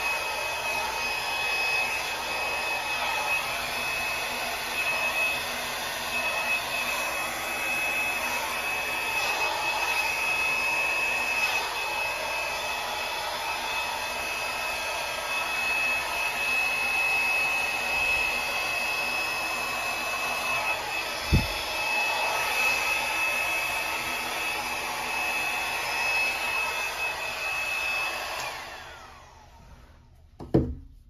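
Small travel hair dryer running steadily, a rush of air with a steady high whine, used to blow thin acrylic paint across a canvas; it switches off shortly before the end. A single thump about two-thirds of the way through.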